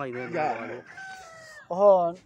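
A rooster crowing: a thin, drawn-out call that falls slightly, about a second in, between men's voices. A loud, arching voice-like call comes near the end.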